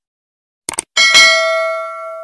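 Subscribe-button animation sound effect: a quick double mouse click, then a notification bell dinging twice in quick succession and ringing on as it fades.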